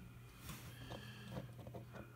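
A few faint clicks from the push buttons of a handheld N1201SA antenna analyzer being pressed, over a steady low hum.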